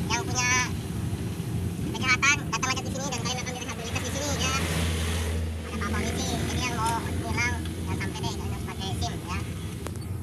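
Car cabin noise while driving at low speed: a steady low engine and road rumble, with indistinct voices over it and a brief rush of noise around the middle.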